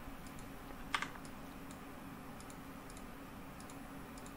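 Scattered light clicks of a computer keyboard and mouse, with one louder click about a second in. A faint steady low hum underneath.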